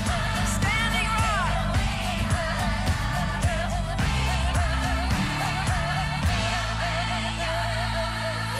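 A song with a singing voice over bass and drums, the sung line wavering in a held vibrato.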